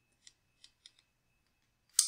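A few faint ticks of a stylus writing on a pen tablet, then one sharper click near the end.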